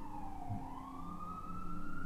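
A single slow siren wail, falling at first and then rising steadily, with a low steady hum beneath it.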